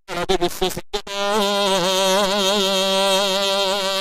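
A man singing: short phrases, then from about a second in one long held note with a wavering, ornamented line, cut off abruptly at the end.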